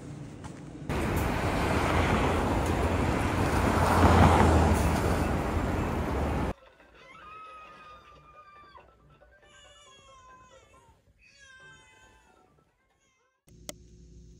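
A loud, steady rushing noise that cuts off suddenly about six and a half seconds in. A string of quieter, high, gliding cat-like calls follows, then a single click near the end.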